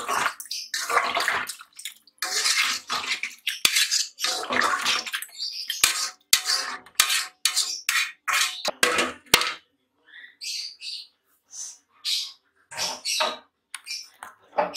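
A metal ladle stirring thin curry gravy in a metal pot: repeated sloshing swishes, with a few sharp clinks of the ladle against the pot. The stirring gets quieter in the last few seconds.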